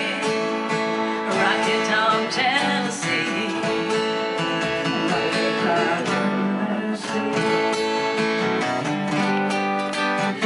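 Live country music: a strummed acoustic guitar with a fiddle, and a woman singing in parts.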